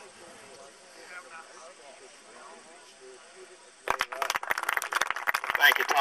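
Indistinct talking among a group of people. About four seconds in, it gives way suddenly to a much louder stretch of sharp crackling clicks mixed with a voice from a handheld microphone and portable amplifier being handled and switched on.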